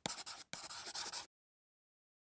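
Pen scratching on paper in a quick run of short handwriting strokes, which stops about a second and a quarter in.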